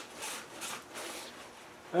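Paper towel rubbing over a cast-iron cylinder head: a few faint wiping strokes that fade out.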